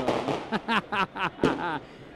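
A man laughing: a breathy burst, then a quick run of short "ha" sounds, about five a second, trailing off near the end.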